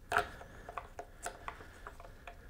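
Small clicks and ticks of a guitar pickup and a small height-adjustment screw being handled and fitted in the pickup cavity: one sharper click just after the start, then a scatter of lighter ticks.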